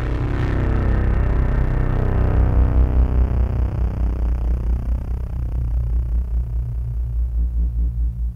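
Electronic music: a deep, steady low drone with a wash of synthesized noise over it that swells over the first few seconds and then slowly fades, its tone sweeping as it goes.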